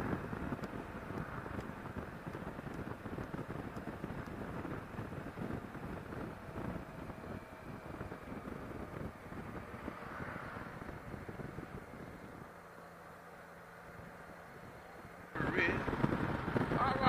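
Motorcycle riding on the road heard from the rider's microphone: rushing wind and road noise with the engine underneath. In the last few seconds it drops to a quieter, steady low hum.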